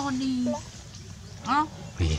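A woman's voice speaking briefly, then one short rising-and-falling vocal sound about one and a half seconds in.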